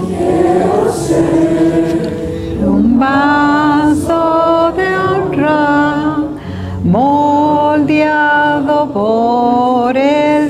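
Women's voices singing a Spanish hymn into microphones, leading the congregation, in long held notes that slide from one pitch to the next.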